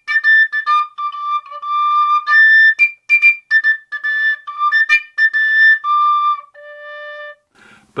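Generation three-hole tabor pipe playing a short tune on its overtone series alone, with all finger holes closed, so it leaps between a few fixed notes of the harmonic series. It opens with quick short notes, moves to longer ones, and ends on a quieter low held note.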